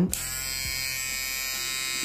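Cordless T-blade hair trimmer switched on, its motor and blade running with a steady buzz.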